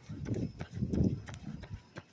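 A runner's rhythmic footfalls, about three strides a second, heard as low thumps with sharp clicks through a phone carried in the hand while running.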